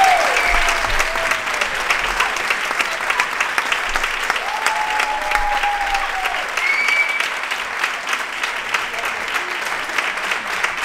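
Theatre audience applauding steadily, with a few shouted cheers near the start and again about halfway through.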